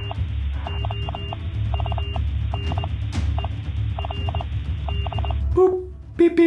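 Mobile phone ringtone playing: a short electronic tune of quick beeps over a low bass hum, repeating about once a second. It stops shortly before the end.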